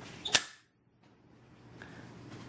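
A single sharp metallic click from the action of an M16-style cap-gun replica rifle as its charging handle is worked to cock it.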